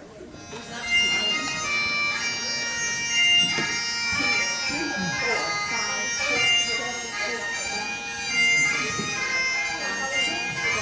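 Highland bagpipe music starting about a second in and then playing steadily, a tune over held steady tones, accompanying Highland dance steps.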